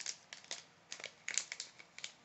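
A plastic snack bag of almonds crinkling as it is handled, a string of short crackles, about seven in two seconds.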